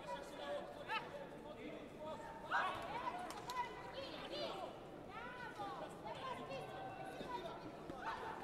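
Overlapping shouts and chatter of coaches and spectators in a large sports hall, with a few sharp slaps about three and a half seconds in.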